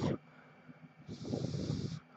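A person blowing a single breath of about a second onto a phone circuit board, starting about a second in, to cool the freshly melted solder under a replacement microphone.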